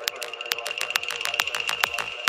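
Progressive psytrance music: fast, evenly spaced hi-hat ticks over a held high synth tone, with a thudding kick drum fading back in partway through.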